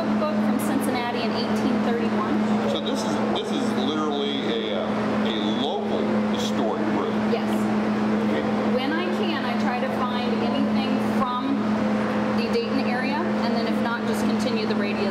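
People talking in conversation over a steady low hum.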